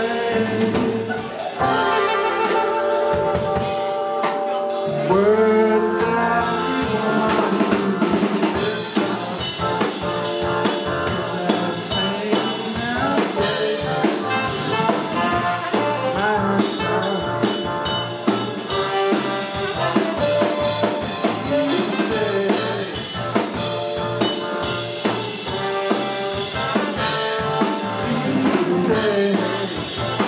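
Live band playing: drum kit, electric guitar, keyboard and horns together in a steady groove.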